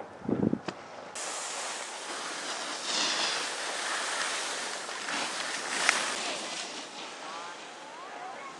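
Steady scraping hiss of packed snow under the filmer's feet as they slide downhill behind the snowboarder, starting abruptly about a second in and swelling twice. A couple of low thuds come just before it starts, and a sharp click comes near six seconds.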